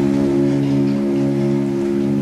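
Opera orchestra holding a sustained chord, with its low note re-struck about a second in.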